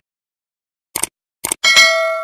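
Two short clicks about half a second apart, then a bright bell ding that rings on and fades. These are the sound effects of a subscribe-button animation: the button being pressed and the notification bell being switched on.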